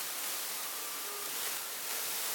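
Steady hiss of background noise, with two faint, brief thin tones about halfway through.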